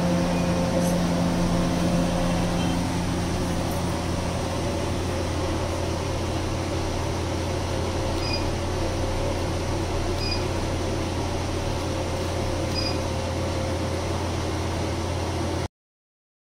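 Steady machine hum of a triple-wavelength diode laser hair-removal unit's cooling system: a constant low drone with a hiss over it. A few faint short high beeps sound in the second half, and the sound cuts off suddenly near the end.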